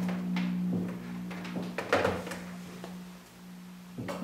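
Mitel 5312 plastic desk phone being turned back over and set down on a desk, with its handset laid back in the cradle: a few knocks and clatters, the loudest about two seconds in, over a steady low hum.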